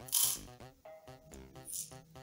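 Urea granules poured into a plastic measuring cup on a digital scale, rattling into the cup in a short burst just after the start and again briefly near the end, over background music.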